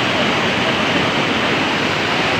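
Swollen river in flood, muddy water rushing past in a steady, loud, unbroken rush.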